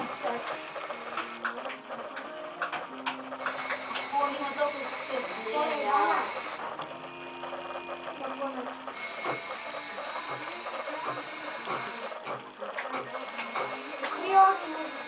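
Indistinct voices over a steady background hum of held tones that start and stop a few times, with scattered light clicks.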